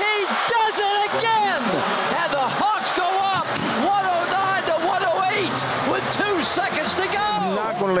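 Many excited voices yelling and cheering in a basketball arena, in celebration of a game-winning three-pointer, with a few sharp slaps or thuds among them.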